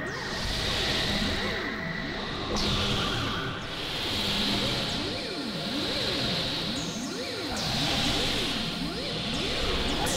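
Experimental synthesizer noise from a Novation Supernova II run through effects: a tone sweeping up and down in pitch about once a second, over steady held tones and swelling, whooshing noise every couple of seconds.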